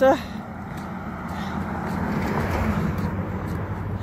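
A road vehicle passing, its rushing noise swelling to its loudest about two to three seconds in and then easing, over a steady low hum.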